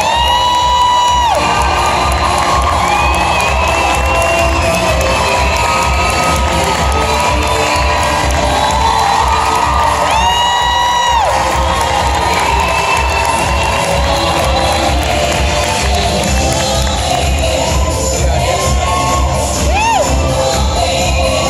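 Loud show music with a steady thumping beat, with a theatre audience cheering and whooping over it; two long, shrill held screams stand out near the start and about halfway through.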